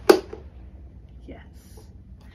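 An electric desk fan blowing, cut by one sharp, loud snap just after the start; the fan's airy hiss is fainter afterwards.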